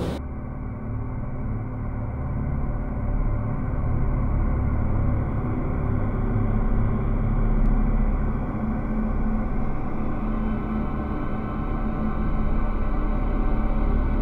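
Dark ambient background music: a low, steady droning rumble with held tones, starting abruptly at a cut.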